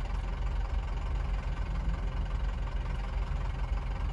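Hyundai Accent 1.5 L four-cylinder engine idling while the car stands still, heard from inside the cabin as a steady low hum.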